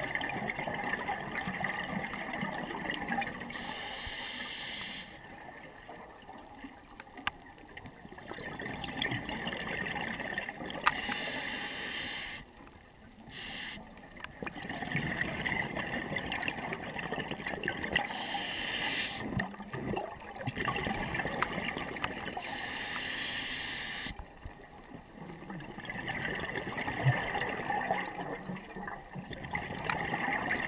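Scuba breathing underwater through a regulator: long bubbling rushes of exhaled air every several seconds, with quieter stretches between them.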